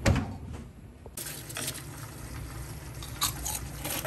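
Oven door shutting with a single thud, followed by a steady hiss with small clicks and rustles.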